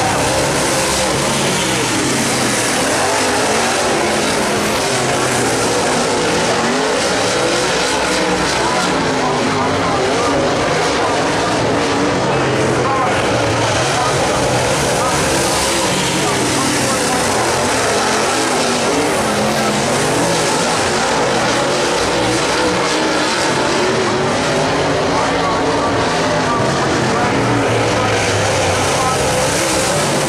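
A field of dirt late model race cars running laps at speed, a steady loud blend of V8 engines at full throttle.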